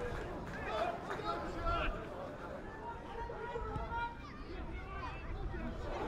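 Indistinct voices of footballers and spectators calling out and chattering at a distance, with no single voice clear.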